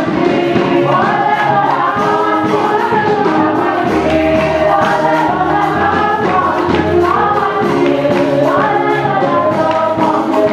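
Church choir singing a gospel song in several voices, with a low bass coming in about four seconds in.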